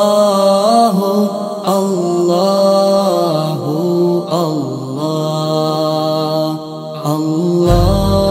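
Background music: a sung vocal chant with long, ornamented held notes over a steady low drone. A deep bass comes in near the end.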